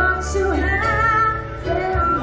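Live band music: a slow ballad with a sung melody and violins over a steady bass.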